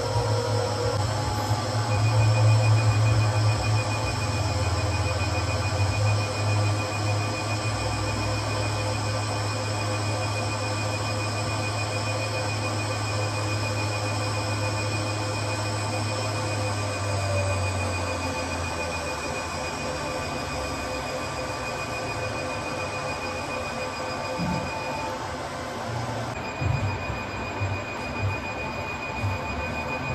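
Diode laser hair-removal machine firing its handpiece over the face: a rapid, steady high-pitched beeping over the machine's lower hum. The beeping breaks off briefly near the end, then resumes.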